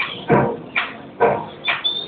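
Symphonic wind band playing a Colombian tambora, with strongly accented chords about twice a second.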